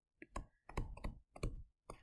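Stylus tapping and clicking on a tablet screen while a word is handwritten: a quick, irregular run of light clicks.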